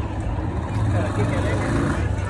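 A low, steady street rumble with faint distant voices.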